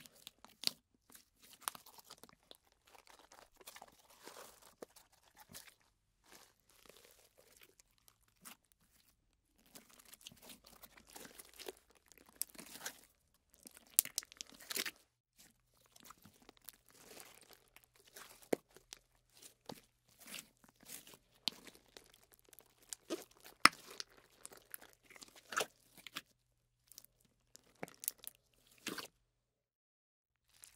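Slime being stretched and squished: sticky, wet clicks, pops and crackles at irregular intervals, with a brief lull about eight seconds in and again just before the end.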